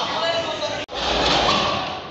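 Several people's voices in a large, echoing hall. A little under a second in they break off abruptly at a cut, and a louder jumble of voices and movement noise follows.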